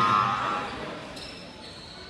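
Indoor basketball game: a held tone ends about half a second in, then fainter crowd and court noise.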